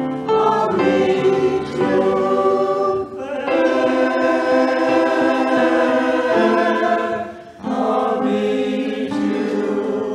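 Mixed choir of men and women singing a hymn in parts with piano accompaniment, holding long notes, with short breaks between phrases about three and seven and a half seconds in.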